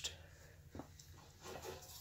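Near quiet: a faint steady low hum, with a single light click about three-quarters of a second in.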